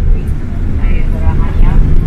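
Tour bus driving along a mountain road, a steady low engine and road rumble heard from inside the cabin, with faint voices over it.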